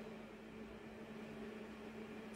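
Faint room tone with a steady low hum and no distinct events.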